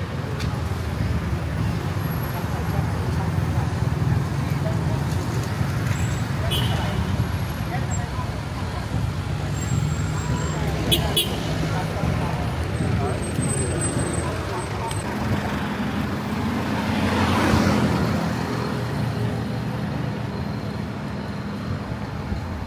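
Busy city street traffic: vehicle engines running in a steady low rumble, with one vehicle passing close and louder about three-quarters of the way through.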